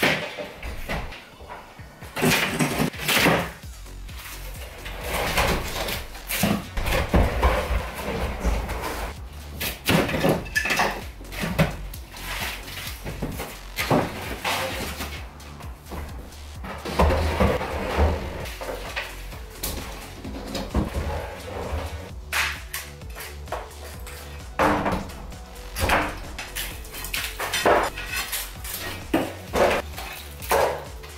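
Partition demolition: plasterboard panels being pried off and dropped, with irregular knocks, cracks and clatter, and hammer blows against a wall near the end. Background music runs underneath.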